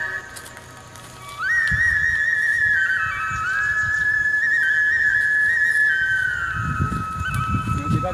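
Background music: a high, flute-like melody of long held notes stepping between a few pitches. Low rustling and thumps come in near the end.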